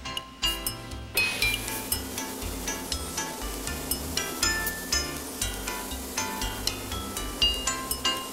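Background music of chiming, bell-like notes over a bass line. From about a second in, a steady hiss runs underneath it.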